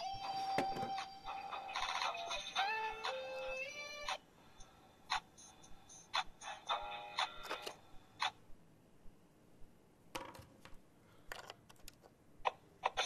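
Oreo DJ Mixer playing a synthesized electronic melody from an Oreo spinning on its music box, with notes stepping up and down, for about four seconds before it cuts off. After that come scattered clicks and taps, with a short snatch of the melody a few seconds later, the way the device keeps stopping.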